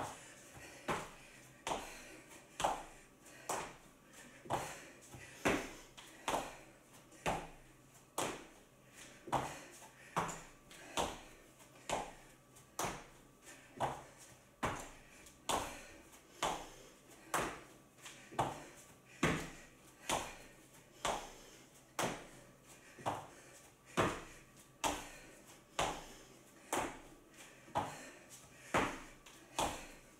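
Short, sharp taps repeating at an even pace, about one a second.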